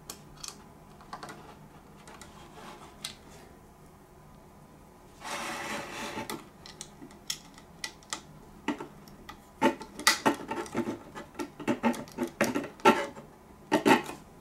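Hands handling a boxed model airliner and its plastic and cardboard packaging. Scattered light clicks and scrapes give way to a rustle of about a second near the middle, then a run of sharper clicks and knocks that is loudest in the last few seconds.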